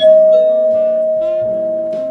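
Queue management system's call chime from its sound module: a loud two-note bell-like chime, the lower second note joining about a third of a second in, both ringing on and slowly fading. It signals that the next ticket number is being called to a counter.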